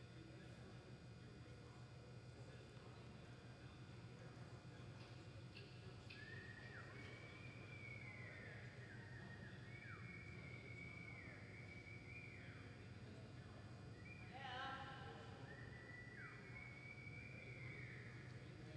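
A horse whinnying faintly: a run of high calls, each sliding down in pitch, from about six seconds in, with a fuller, richer call a little before the end. A steady low hum lies under it throughout.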